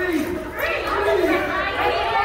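A group of adults talking and calling out over one another in overlapping chatter.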